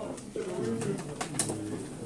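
A man talking in a low voice in a small room, with a few sharp clicks about a second in.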